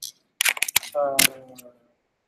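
A run of quick, sharp clicks, then a short falling vocal sound from a man, with one more loud click over it.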